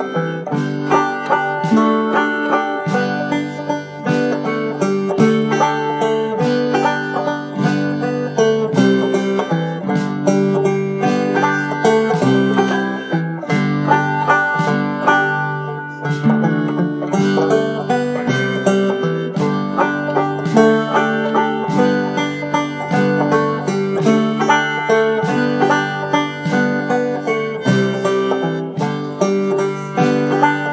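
Banjo-led string-band music: a rapid run of picked banjo notes over guitar, with no singing.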